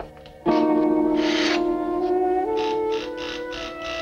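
Film-score music: a sudden loud held chord enters about half a second in, a low note sustained under it while higher notes step upward.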